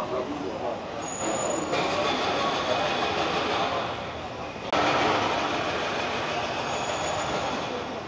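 Road traffic on a busy multi-lane city street: a steady mix of passing cars and electric scooters, with a sudden jump in level about halfway through.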